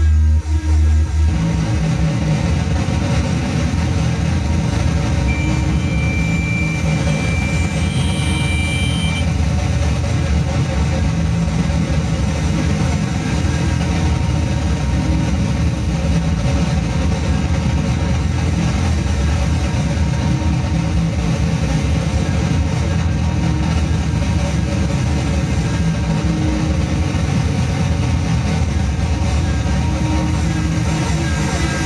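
Experimental electronic noise music from a Roland MC-303 groovebox and a Korg Kaossilator run through effects pedals: a dense, rumbling low drone. A pulsing low tone stops just over a second in, and a thin high tone sounds for about four seconds early in the passage.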